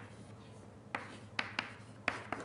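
Writing on a lecture board: a quiet first second, then three sharp taps of the writing tool about a second in and just after, with faint scratching between them.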